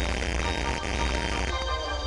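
Music playing over a low, pulsing buzz from a faulty microphone, the 'farting sound' of a bad mic.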